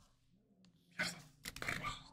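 Pink highlighter's felt tip scratching across paper in short strokes close to the microphone: nothing for about a second, then one sharp stroke and a quick run of several more.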